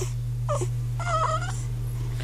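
Hungry newborn baby fussing with three short high cries, the longest about a second in, over a steady low hum.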